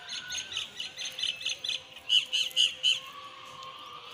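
A bird calling: a quick series of short, high notes, about three or four a second, getting louder about halfway through and stopping about a second before the end.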